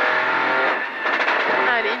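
Peugeot 208 Rally4's turbocharged three-cylinder engine running hard at speed, heard from inside the cockpit, with a brief dip in level about halfway through.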